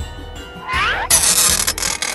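A cat yowl rising in pitch, followed by a loud hiss lasting about a second that cuts off suddenly, over background music with a steady low beat.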